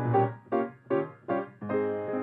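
Chickering grand piano playing by itself from a MIDI piano-roll file of 1920s dance music: a run of short, detached chords about every half second over a bass line.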